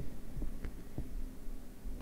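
A pause in speech: a low, steady room hum with three faint, soft knocks within the first second.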